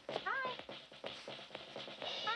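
A cat meows once near the start, a short call that rises then falls in pitch, with faint footstep-like taps around it.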